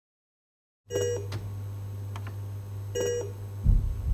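The Addams Family pinball machine in switch test mode: two short electronic beeps about two seconds apart over a steady low hum, the test tones sounding as switches such as the Grave A target register. A low thump near the end.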